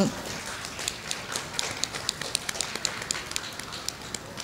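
Scattered sharp clicks, a few a second and irregular, over a faint murmur of a hall.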